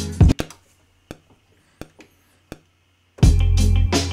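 Boom-bap hip-hop beat playing from an Akai MPC One, with drums, a sampled guitar and deep bass. About half a second in the beat cuts out, leaving only a few isolated hits. It drops back in at full level near the end.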